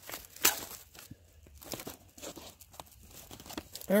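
The plastic bag of a Humanitarian Daily Ration being cut open and handled: scattered crinkling and crackling of the plastic, with one louder, sharper sound about half a second in.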